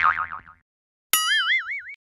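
Cartoon boing sound effects: a wobbling boing falling away at the start, then a sharp click about a second in followed by a second boing whose pitch wavers up and down.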